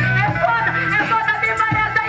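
Hip-hop beat played loud through a PA, with a woman rapping into a microphone over it.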